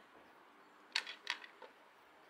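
Small metal bolts clicking against the hedge trimmer's blade and gearbox as they are set in their holes: two sharp clicks about a second in, a third of a second apart, then a fainter one.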